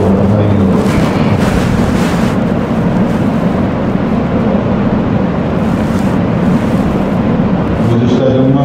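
Steady rumble of road and engine noise inside a moving car's cabin.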